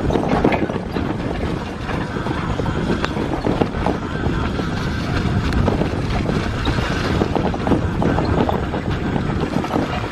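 Wind buffeting the microphone over the continuous rattle and knocks of a rigid, unsuspended electric bicycle jolting across rough grass.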